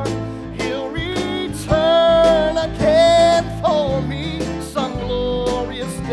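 A man singing a gospel song with live band backing: long held notes with vibrato over steady drum strokes.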